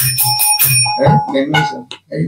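Small hand cymbals struck in a quick, even rhythm, stopping a little under a second in and left ringing, as a devotional song ends. A man's voice sings and then speaks over the fading ring.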